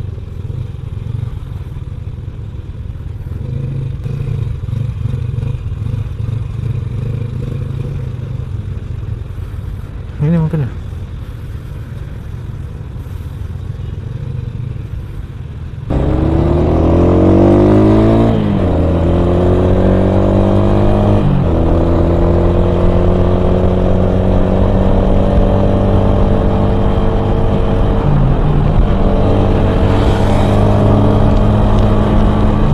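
Yamaha Vega R's single-cylinder four-stroke engine running low in slow traffic, then, about halfway through, accelerating in a rising whine with two gear changes a few seconds apart before settling to a steady cruise. A short wavering tone sounds a little after ten seconds.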